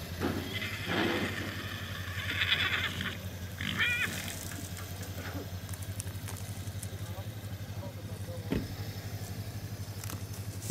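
An engine idling with a steady low, rapid throb, with people talking in the background. A short, wavering high-pitched call comes about four seconds in.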